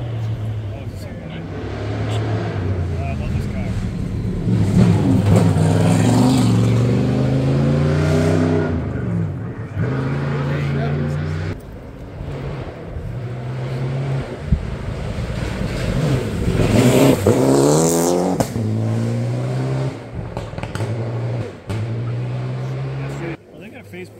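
A rally car's engine revving hard through repeated gear changes, each pull rising in pitch and then dropping briefly at the shift. It is loudest from about five to eight seconds in and again around seventeen seconds, then fades near the end.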